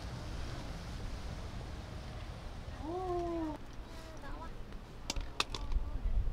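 Wind rumbling on the microphone, with one short pitched vocal call that rises and falls about halfway through, a fainter one just after, and a few sharp clicks near the end.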